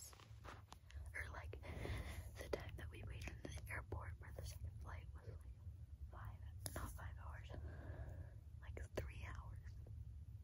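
A girl whispering close to the microphone, with a few sharp clicks from her hands handling the phone and a steady low hum underneath.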